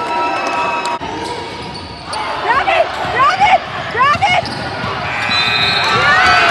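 Basketball shoes squeaking on a hardwood gym floor during play: a quick run of short, rising squeaks about two to four seconds in, over spectator voices.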